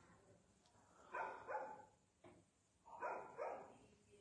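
A dog barking in two quick pairs of short barks, about a second in and again about three seconds in.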